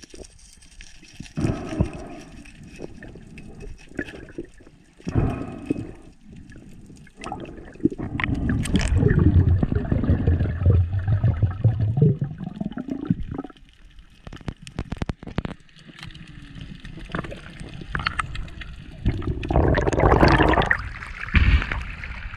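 Underwater water noise around a diver's camera: gurgling and bubbling with scattered sharp clicks and knocks, growing louder for a few seconds in the middle and again near the end.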